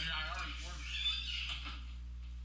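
A man's voice talking indistinctly with his mouth full of food, over a steady low hum.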